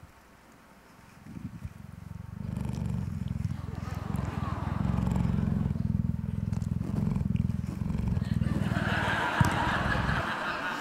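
A cheetah purring close into a handheld microphone. It is a fast, even, low rumble that begins about a second in, swells over the next second, then holds steady.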